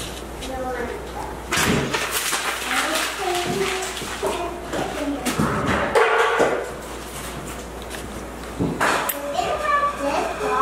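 Young children's voices chattering in a classroom, with a few knocks and thuds, about a second and a half in, around six seconds and near the end.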